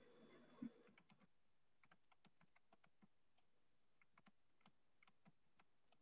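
Near silence, with faint, irregular clicks of typing on a computer keyboard and one slightly louder tap under a second in.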